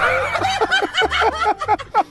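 Laughter in quick repeated bursts that trail off about a second and a half in.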